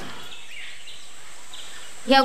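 Steady background hiss of ambient room noise, with a few faint high chirps that sound like birds, about half a second in and again past the middle.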